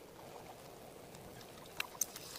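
Faint, steady sizzling of a hot dog being cooked by 120-volt DC from a stack of 9-volt batteries, the current passing between two forks pushed into it and boiling its juices out at the forks. A couple of small clicks come near the end.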